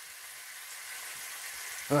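Bacon rashers sizzling steadily in a hot non-stick frying pan.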